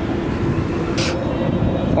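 Steady low outdoor rumble with a faint steady hum under it, the kind of background left by road traffic, and a short hiss about a second in.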